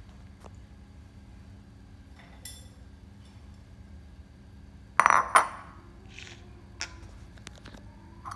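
Dishware clinking on a tiled counter: a few light taps, then one loud ringing clink about five seconds in, as glasses, lids and a plate are handled.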